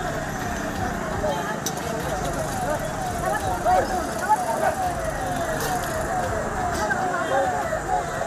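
A siren sounding in a repeating up-and-down sweep, about two cycles a second, over street noise and people's voices.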